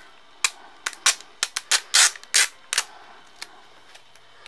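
Blue plastic Blu-ray keep case being handled: a run of about a dozen sharp plastic clicks and crackles, starting about half a second in and stopping about three seconds in.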